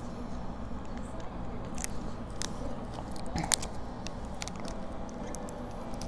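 Close-miked mouth sounds of someone tasting a dipping sauce: scattered wet clicks and lip smacks, the sharpest about three and a half seconds in, over a faint steady low hum.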